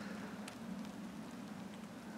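Faint, steady outdoor background noise, an even hiss with no distinct sound standing out.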